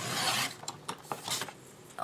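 Fiskars sliding paper trimmer cutting through a sheet of paper as its blade carriage is drawn along the rail, loudest in the first half second, with a shorter second stroke a little past a second in.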